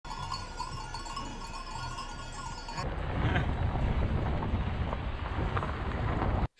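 A flock of sheep with bells, a mass of overlapping ringing tones, for the first three seconds or so. It then breaks off suddenly to a louder, steady low rumble.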